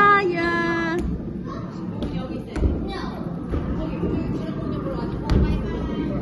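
A voice calling out in one held, steady note for about a second at the start, then a steady background murmur with faint, scattered voices and a few light knocks.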